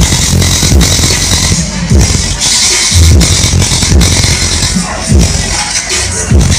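Very loud dance music played through a large outdoor DJ speaker stack, with heavy, regular bass kicks.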